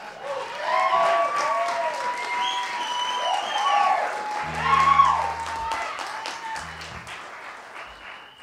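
Live club audience applauding and cheering, with whoops over the clapping. The applause gradually dies away toward the end.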